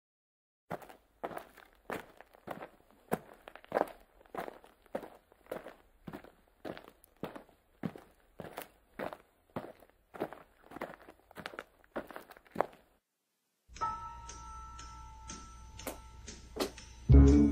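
Footsteps walking at a steady pace, about two steps a second, each a crisp knock, stopping about thirteen seconds in. After a short silence, faint music with held tones begins near the end.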